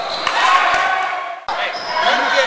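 Basketball game sounds in a gym: a ball bouncing on the court among shouting voices, with a sudden break in the sound about a second and a half in.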